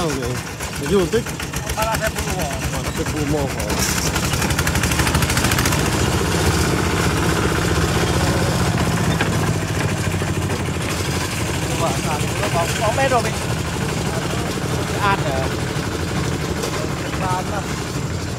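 Two-wheel walking tractor's single-cylinder diesel engine running steadily under load, pulling a loaded trailer, with a fast, even chugging beat.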